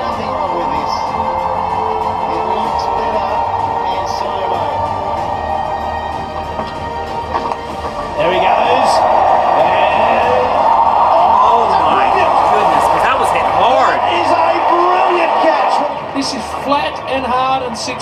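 Audio of a televised cricket highlights compilation: background music with broadcast commentary and stadium crowd noise. The crowd noise swells louder about eight seconds in and falls back near the end.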